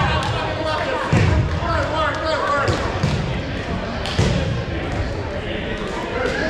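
Many people chatting at once in a reverberant gymnasium, with several dull thuds of balls bouncing on the gym floor.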